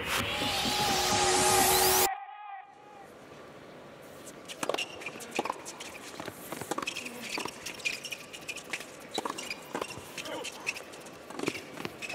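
A short intro music sting with a rising sweep, cut off about two seconds in. Then a fast doubles tennis rally: a string of sharp racket strikes and ball bounces, about one or two a second, over quiet arena hush.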